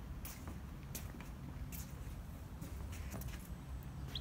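Footsteps on wooden decking: irregular light knocks, roughly one to two a second, over a steady low hum.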